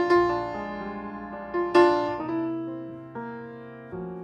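Solo piano music with slow chords and single notes that are struck and left to ring out and fade. The strongest notes come right at the start and just under two seconds in.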